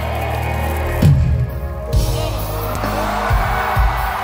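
Live band starting a song in an arena, heard from among the audience: sustained keyboard chords, with deep bass-drum hits coming in about a second in and repeating, over crowd noise.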